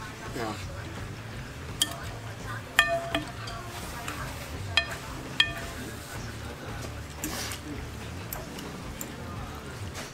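Eating utensils clinking against large glass bowls of pho, about five sharp clinks between two and five and a half seconds in, the loudest about three seconds in with a brief glassy ring.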